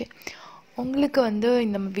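A woman talking, after a short breathy hiss near the start.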